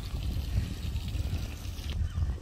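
Wind buffeting the microphone in an uneven low rumble, over a steady hiss of water splashing from a pond fountain.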